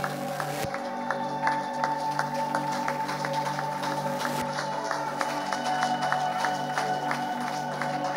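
Worship band music: long held keyboard-style chords, with a steady rhythm of short clap-like clicks over them.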